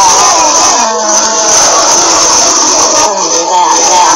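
A singing voice over music, the sung notes wavering up and down, with a steady high hiss underneath.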